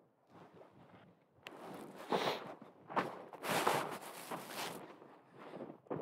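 Footsteps in snow: a person walking a few paces across snow on frozen river ice, an uneven series of steps.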